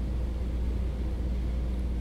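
A steady low hum with a faint rumble beneath it, unchanging throughout: the background room tone of a talk recording.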